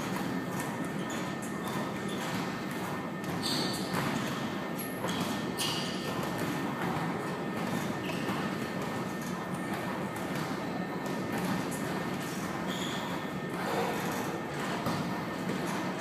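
Steady background noise of a large gym room, with scattered faint clicks and knocks.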